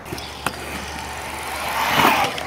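Stunt scooter wheels rolling on a concrete skatepark bowl, a steady rushing rumble that grows louder near the end, with one short click about half a second in.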